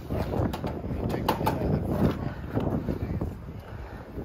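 Low rumble of the top fuel dragster being towed slowly over pavement with its engine off, with wind buffeting the microphone and a few sharp knocks.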